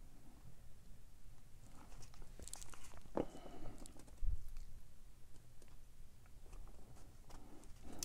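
Faint handling noises as a sheet of watercolour paper is lifted and slid across the table: light rustling and a scatter of small clicks, with a soft thump a little past the middle.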